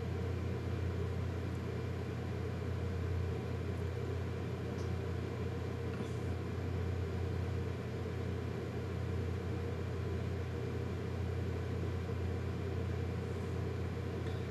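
Steady low hum of room background noise, unchanging throughout, with no distinct sounds on top.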